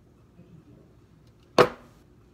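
One sharp clack about a second and a half in, as the emptied blender jar is set down hard on the kitchen counter, with a brief ring.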